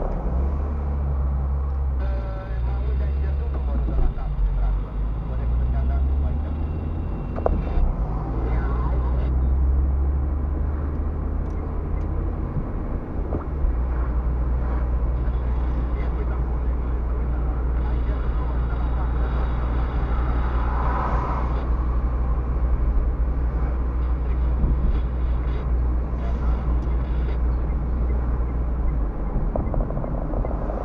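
Car driving, heard from inside the cabin: a steady low drone of engine and tyres on the road.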